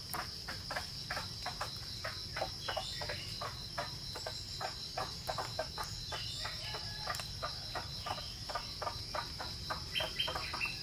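Steady high-pitched trill of crickets or other insects, with a quick run of short taps or knocks, about three a second, over it.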